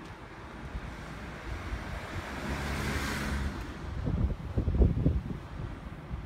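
A small van passing close by on the street: engine and tyre noise swell to a peak about three seconds in, then fade. Gusts of wind then buffet the microphone with low rumbles.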